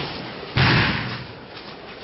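A thrown aikido partner hitting a padded mat in a breakfall: one loud slap-and-thud about half a second in, dying away quickly.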